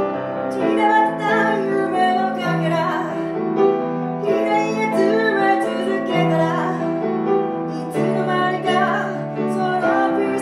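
A woman singing with grand piano accompaniment; her voice comes in about half a second in over sustained piano chords that change every second or two.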